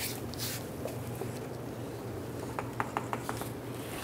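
Rubber upper door weatherstrip seal being pulled off its track: faint rubbing and handling noise with a few light clicks, more of them about three seconds in, over a low steady hum.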